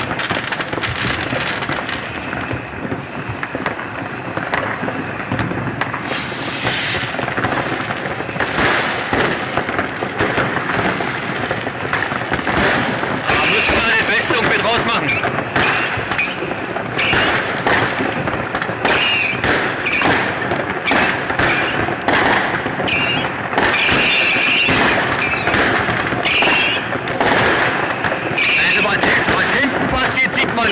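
Dense, unbroken crackle and banging of many New Year's Eve fireworks and firecrackers going off at once, with rockets bursting; the barrage grows thicker about six seconds in.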